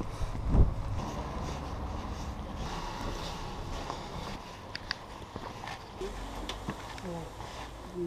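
Footsteps and low street ambience picked up by a handheld camera while walking, with a loud knock about half a second in, a couple of sharp clicks around the middle and faint voices near the end.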